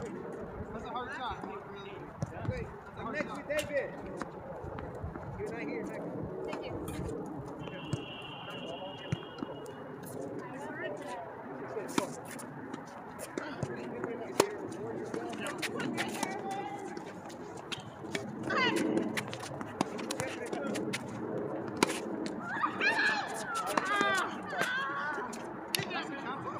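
Tennis balls struck by rackets and bouncing on a hard court during a doubles rally: sharp pops at irregular intervals, with players' voices calling and talking over them.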